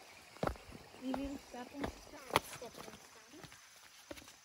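Footfalls of children in sandals landing on flat stepping stones in a shallow creek: a few sharp knocks, the loudest a little over two seconds in.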